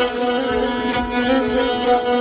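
Solo violin playing Persian classical music in dastgah Shur: held bowed notes with small ornamental turns in the pitch.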